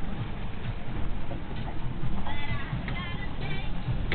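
Wind buffeting the microphone and the rush of the sea aboard a small sailing boat under way in a fresh breeze, with short wavering high-pitched tones a little past halfway.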